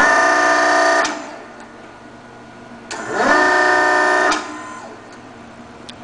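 REXA Electraulic actuator's servo motor and hydraulic pump whining through two full strokes, each a little over a second long, rising quickly in pitch as it starts and then holding steady. A quiet pause of about two seconds separates the two strokes.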